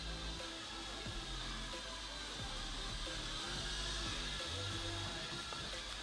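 Quiet background music with slow, held bass notes, over the faint steady high whir of the L6082 toy's small electric propeller motors in flight.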